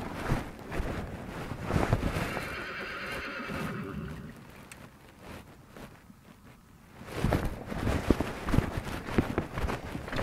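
A horse whinnies once, a long call of about two seconds beginning about two seconds in. Short knocks and rustling follow near the end.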